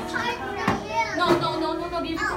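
A group of young children chattering and calling out over one another, with two short, sharp sounds among the voices: one under a second in and a louder one about a second and a half in.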